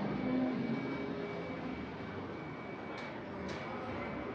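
Steady, indistinct background din of a busy indoor food hall, with no clear voice standing out, a faint steady high tone running under it, and a couple of faint brief clatters about three seconds in.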